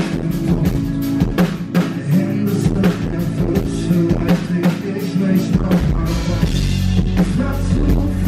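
Live pop-rock band playing: a steady drum-kit beat with electric guitar, keyboards and a man singing, and a fuller bass coming in a little past halfway.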